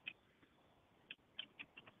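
Faint computer keyboard keystrokes: a single click at the start, then a quick, irregular run of about five clicks in the second half, as numbers are typed into a field.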